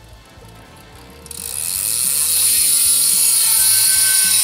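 Rear freehub of a Bontrager Aeolus RSL 37 wheel on a Trek Emonda SLR road bike, buzzing as the spun-up wheel freewheels. A loud, steady, high-pitched ratcheting buzz starts about a second in.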